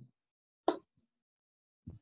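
Near silence on a video-call line, broken once, a little under a second in, by a single short sharp plop or click.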